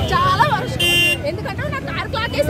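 A short vehicle horn toot about a second in, over busy street traffic noise and a crowd's voices.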